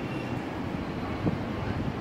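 Steady low rumble of background noise in a pause between spoken sentences, with one faint soft knock just over a second in.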